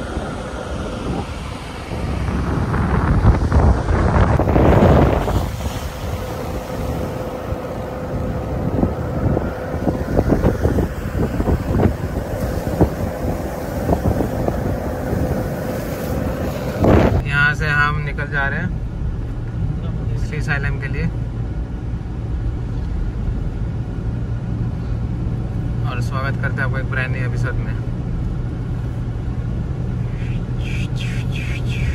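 Sea waves breaking on a rocky shore, with wind on the microphone and the loudest surge a few seconds in. About halfway through it cuts to the steady low hum of a car on the road, heard from inside the cabin.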